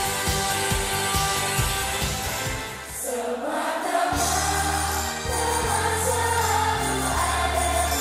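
A female idol group sings a pop song together into microphones over a backing track. About three seconds in the drum beat drops out, and the song continues in a softer passage of long held bass notes under sustained singing.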